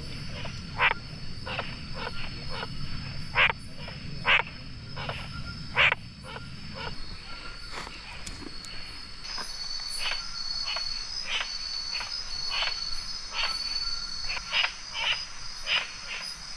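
Night-time rainforest chorus: insects trilling steadily at a high pitch, a second trill joining about nine seconds in, and frogs giving short, sharp calls one or two a second. A low rushing sound underneath fades out about halfway through.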